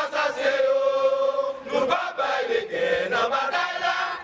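A group of Haitians chanting together in unison, one long held syllable from near the start to nearly two seconds in, then shorter chanted phrases.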